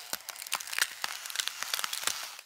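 Crackling sound effect of frost forming: a dense run of irregular small crackles and clicks, mostly high-pitched.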